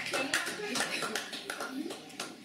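Small audience clapping in scattered claps, with people talking, as the applause thins and fades down.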